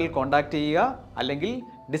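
A man speaking in Malayalam, then a short two-note electronic chime like a doorbell near the end, over light background music.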